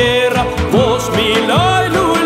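A man singing an Albanian folk song, the melody bending and wavering in pitch in ornamented turns, over instrumental backing.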